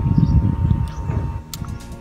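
Wind buffeting the microphone outdoors: a loud, uneven low rumble that eases off in the second half.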